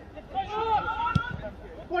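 Voices calling out across a football pitch, fainter than commentary, with one sharp thud just past halfway.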